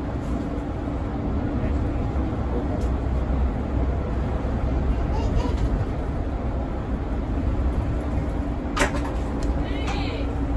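Mercedes-Benz Citaro 2 city bus heard from inside its cabin while driving: steady engine and road rumble with a faint steady hum. A single sharp knock near the end stands out as the loudest moment.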